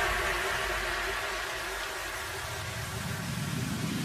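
Intro sound effect: a steady, noisy whoosh with faint sustained tones that slowly fades, with a low rumble building near the end.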